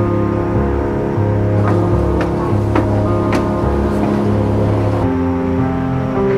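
Background music with deep held bass notes and sustained tones, and a few sharp hits in the middle.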